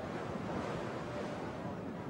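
Steady rushing of wind over the camcorder microphone mixed with harbour water, heard from the deck of a harbour ferry.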